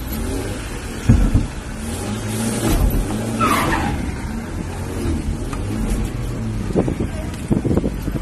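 Mercedes-Benz car engine heard from inside the cabin while driving, its note rising and falling with the throttle. A thump about a second in and a short high squeal falling in pitch around the middle.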